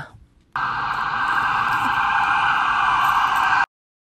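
A steady, even buzzing noise starts about half a second in, holds unchanged for about three seconds, then cuts off abruptly into silence.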